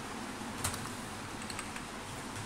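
A few scattered computer keyboard keystrokes over a faint steady background hum.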